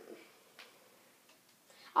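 Quiet room tone with a few faint, irregular clicks, after the tail end of a spoken "um" at the very start.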